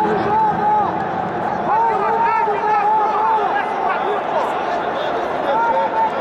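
Several voices shouting over one another in a large sports hall: spectators and coaches calling out to the two grapplers.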